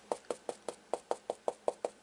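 Stencil brush dabbing textile paint through a plastic stencil onto a cotton flour sack towel: a steady run of light taps, about five a second.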